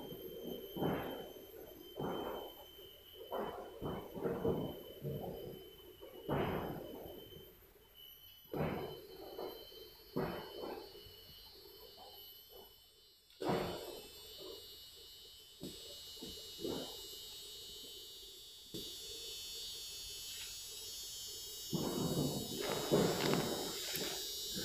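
Irregular crunching and rustling of leaf litter and leafy branches as a person walks barefoot through dense forest undergrowth. A faint steady high-pitched whine runs underneath.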